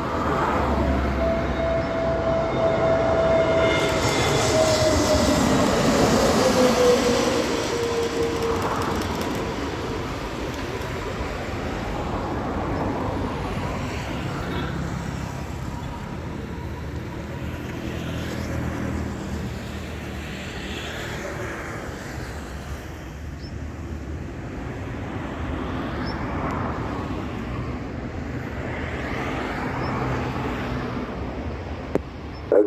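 Airbus A320neo jet engines passing low overhead on landing, a steady whine that slides down in pitch as the airliner goes by and is loudest a few seconds in. It then gives way to a quieter, steady rumble from the jet rolling out on the distant runway.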